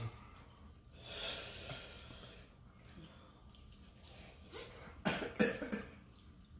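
A person breathing out hard about a second in, then two or three short coughs near the end, from someone eating Carolina Reaper hot wings.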